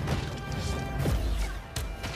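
Dramatic film score music mixed with several sharp crashes and impacts of battle sound effects.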